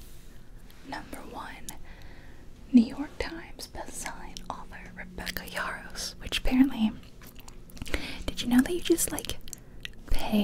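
A woman whispering close to the microphone, with small mouth clicks between her words.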